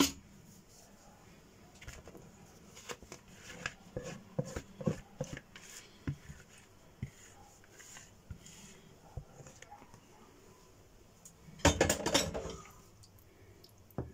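Light taps and short scrapes of a cooking pot against a glass baking dish as sauce is poured out of it, with a louder burst of pot-and-dish noise a couple of seconds before the end.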